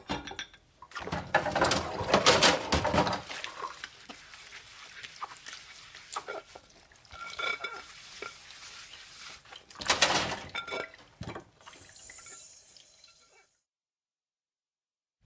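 Dishes being washed by hand in a sink: plates and cutlery clinking and clattering with water splashing. It comes in irregular bursts, busiest in the first few seconds and again about ten seconds in.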